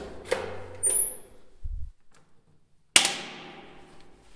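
A few light knocks and clicks, then about three seconds in a single sharp bang that rings out and fades over about a second.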